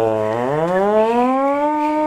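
Air-raid siren wailing: one long tone whose pitch climbs over the first second and a half, then holds and starts to sink near the end.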